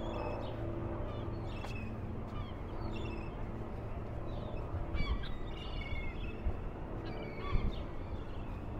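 Birds calling in short, repeated calls, several overlapping, over a steady low background rumble.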